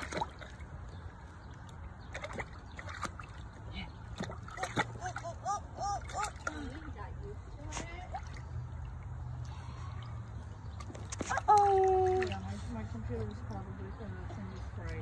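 Small splashes and slaps as a baby's hands hit the water in a shallow plastic kiddie pool, repeated irregularly throughout.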